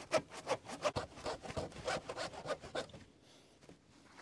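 Handsaw cutting through an old weathered wooden fence rail in rapid back-and-forth strokes, squaring off its broken end; the sawing stops about three seconds in as the cut finishes.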